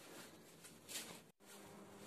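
Near silence: faint room noise with a brief soft rustle about a second in, then a sudden drop-out followed by a faint steady low hum.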